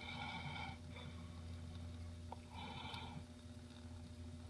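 Automatic transmission fluid draining through a funnel into the transmission fill hole, gurgling faintly twice over a steady low hum.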